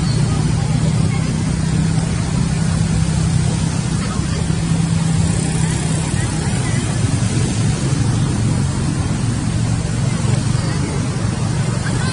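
A motor running steadily with a low hum, its pitch settling slightly lower about halfway through.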